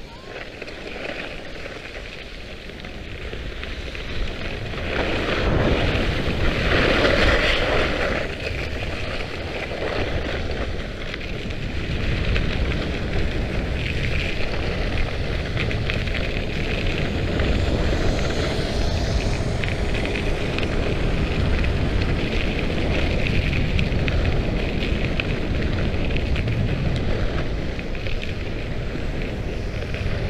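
Wind rushing over the microphone and skis scraping and carving over icy, hard-packed snow during a fast downhill run. The rush and scrape swell louder about five seconds in, then carry on steadily.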